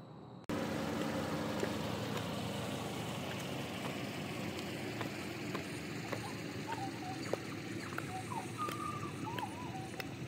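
About half a second in, steady outdoor ambience with a low traffic hum begins. Faint clicks of 8-inch platform high heels striking a concrete footpath run through it, and a few short bird chirps come in the second half.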